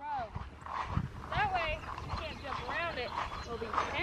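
A faint, distant voice calls out a few short, high-pitched phrases over a low rumbling background, with a soft bump about a second in.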